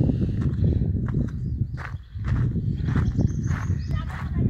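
Footsteps of a person walking on a gritty dirt and stone path, short scuffing steps every half second or so, over a steady low rumble.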